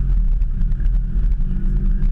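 Car engine running at low speed as the car rolls slowly, a steady deep rumble heard from inside the cabin, with faint scattered ticks.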